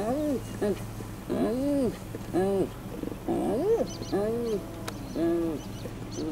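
Spotted hyena giggling: a series of about seven short, pitched calls, each rising and then falling, spaced roughly a second apart.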